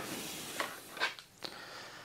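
Faint rustling of hands handling a Lowepro Nova 200 AW II camera shoulder bag and its strap, with three light clicks about half a second apart.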